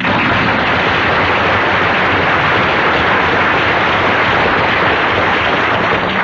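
Studio audience applauding steadily, dying away as the next speaker begins.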